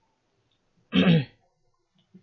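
A person clearing their throat once, briefly, about a second in.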